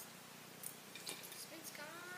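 A few light clicks and taps from a plastic fidget spinner being handled right next to the microphone, then a child's voice starts near the end.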